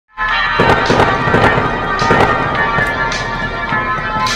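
Instrumental intro of a soft-rock song: sustained chords with sharp drum hits about twice a second.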